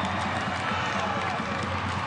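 Steady crowd noise from the stands of a soccer stadium, an even hubbub under the broadcast.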